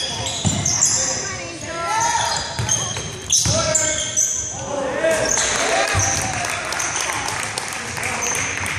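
Basketball being played on a hardwood gym floor: short, high sneaker squeaks come again and again, with the thud of the ball bouncing and voices calling out, all echoing in the hall.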